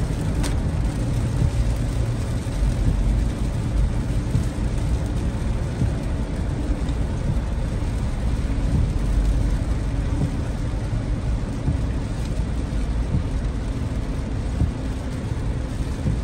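Car driving on a rain-soaked highway, heard from inside the cabin: a steady low rumble of tyres and road noise mixed with the hiss of heavy rain. A single sharp click comes about half a second in.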